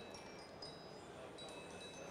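Low room tone with faint, high ringing tones that start and stop several times, like small chimes.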